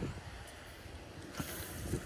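Wind buffeting the microphone, with an uneven low rumble. About one and a half seconds in, a click followed by a short hiss.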